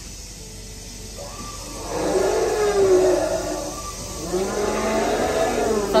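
Recorded dinosaur roar played through the dinosaur model's loudspeaker: two long, low growling calls with slowly sliding pitch, the first starting about a second in and the second about four seconds in.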